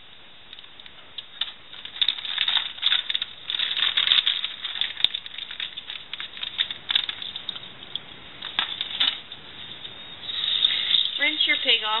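Clear plastic pouch crinkling and rustling in irregular bursts as gloved hands work a preserved fetal pig out of it over a sink. Near the end a faucet is turned on and water runs steadily.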